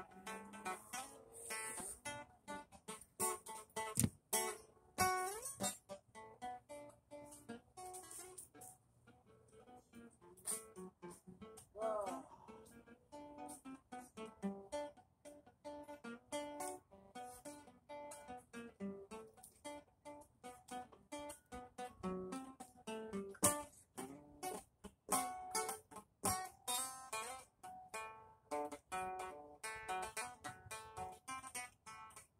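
Acoustic guitar being strummed and picked in loose, irregular chords and single notes.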